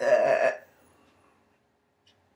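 A single short, loud vocal sound from a woman, lasting about half a second at the very start, then quiet.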